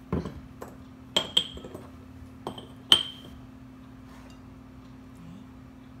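Kitchen utensils clinking against a glass mixing bowl while dry flour is stirred: about six short clinks with brief ringing in the first three seconds, the loudest about three seconds in. After that only a low steady hum remains.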